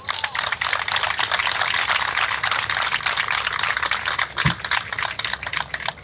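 A crowd applauding: dense, steady clapping that dies away as the next speaker begins.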